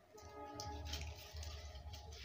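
Faint rustle and crinkle of paper cup liners being peeled off sweets, a short crackle about halfway and another near one second, over faint music with a few held notes.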